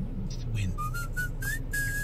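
Radio advert playing in a car: a voice calls "Win!", then a short whistled phrase of a few notes climbs in pitch and ends on a held note, over a low steady hum.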